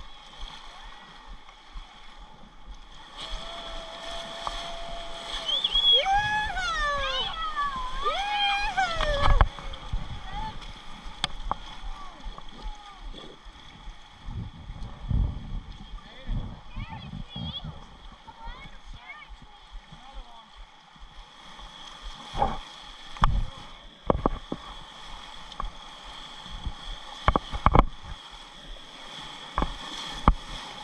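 River water rushing and splashing around an inflatable raft running small rapids. Several seconds in, a voice rises and falls through held and gliding notes without words, and near the end come a few sharp knocks.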